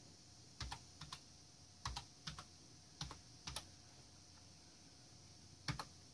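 Faint keystrokes on a computer keyboard, a slow uneven run of single key presses: a password being typed at a sudo prompt, with the Enter key pressed near the end.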